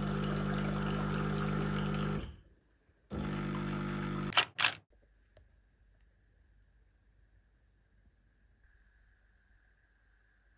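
De'Longhi espresso machine's pump running in a descaling cycle: a steady buzzing hum for about two seconds, a short pause, then another second of the same hum, followed by two sharp clicks. After that, near-silent room tone.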